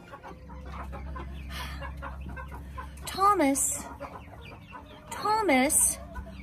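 Chickens clucking and calling as they feed, with two louder calls about three and five seconds in.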